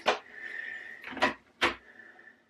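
Three sharp plastic taps and clicks from a diamond painting drill pen dipping into a small plastic drill pot to pick up a single drill and pressing it onto the canvas.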